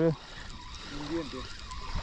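Low, steady sound of water lapping at the shoreline, with a faint voice about a second in.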